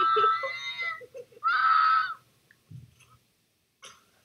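Two high-pitched screams: one held for about a second, then after a short gap a second shorter one, with quiet after about two seconds in.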